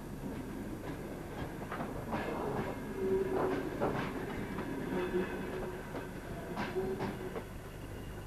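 Passenger train carriages rolling past, their wheels clacking irregularly over rail joints, louder in the middle as the coaches pass, with a steady whining tone that comes and goes.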